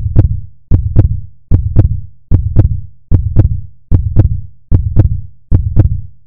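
Heartbeat sound effect: paired low thumps, lub-dub, repeating steadily about every 0.8 seconds, eight beats in all.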